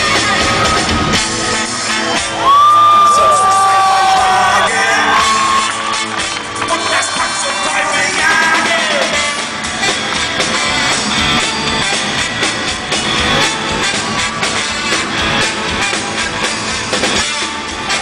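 Live rock band playing, with an alto saxophone soloing over the drums and band, and the audience cheering and whooping.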